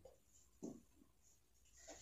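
Faint handling of thin craft paper being folded and creased by hand, with a short soft rustle about half a second in and another near the end.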